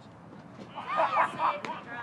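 Faint, distant voices calling out across the field, starting under a second in.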